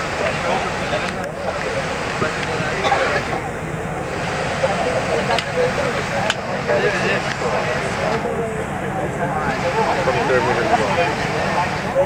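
Indistinct chatter of passengers inside a Boeing 777 cabin, over steady cabin noise.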